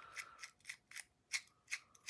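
A quick run of small, faint metallic clicks, about three a second, from hand work on a titanium folding knife's pivot while it is being put back together.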